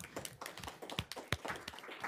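A handful of people applauding, with light, uneven hand claps.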